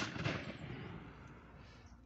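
A single sharp bang at the start, followed by a rumbling tail that fades over about a second and a half, over faint background music.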